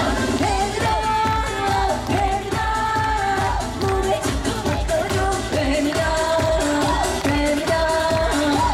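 A woman singing an upbeat Korean trot song into a microphone over an amplified live band with a steady pulsing beat.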